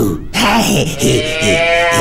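A cartoon character's high-pitched, nonverbal voice giving one long, wavering, happy cry that starts about a third of a second in, after a short sound right at the start.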